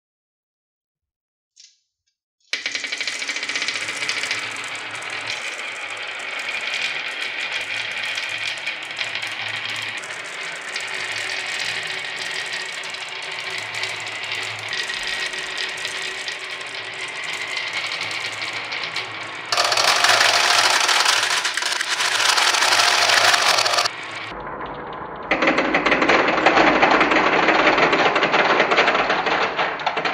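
A cupful of small balls rolling and clattering down the winding grooves of a carved wooden slope, a dense continuous rattle that begins about two and a half seconds in after a single click. It grows louder for the last third, with a brief quieter dip shortly before the end.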